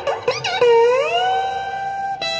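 Electric guitar through a Gonk! Clari(not)-clone fuzz pedal: a couple of short bent notes, then one note that glides up in pitch and is held.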